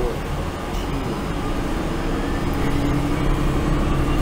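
Bus running, heard from inside the cabin: a steady low engine hum, with a thin whine rising slowly in pitch through the second half.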